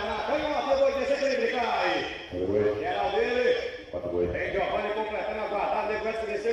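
A man talking throughout, with no other sound standing out.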